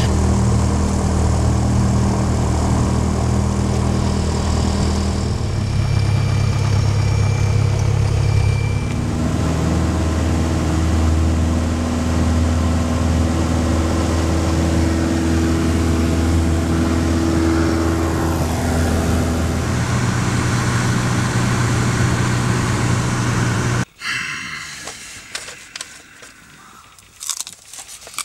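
Single-engine propeller plane's piston engine running loud and steady, heard from inside the cockpit. Its pitch steps up and down as the throttle is moved, with changes about five and nine seconds in. The engine sound cuts off abruptly about four seconds before the end, leaving quieter scattered small sounds.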